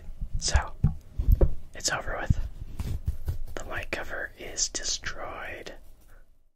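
Fingers scratching, rubbing and tapping hard and fast directly on a condenser microphone's metal grille and body at close range. It gives an uneven run of scratchy, swishing strokes with dull handling thumps from the mic itself.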